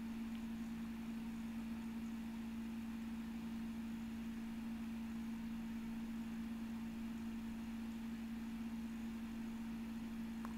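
Quiet room tone: a steady low hum held on one pitch, over a faint hiss.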